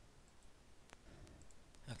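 Near silence with a few faint computer-mouse clicks, the clearest about a second in.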